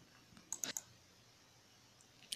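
A few quick, faint computer mouse clicks about half a second in.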